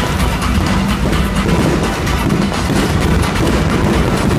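Music playing over a continuous rumble and dense crackle of a fireworks barrage.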